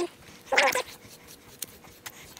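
A Highland cow giving one short call about half a second in, lasting about a third of a second.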